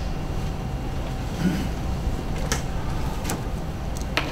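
Steady low rumble of room noise, with a few faint clicks and light knocks in the second half.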